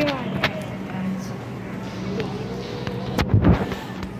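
Handling noise from a handheld phone: a hand rubbing and bumping against the microphone about three seconds in, over a steady store background hum, with a brief voice at the start.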